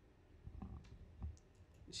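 A few faint, sharp clicks with low bumps in a quiet room, and a voice begins just before the end.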